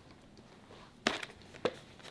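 Two light clicks, about half a second apart, from packets of cold medicine being handled on a table, with quiet room tone between them.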